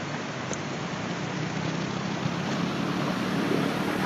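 Steady outdoor rushing noise, growing slowly louder.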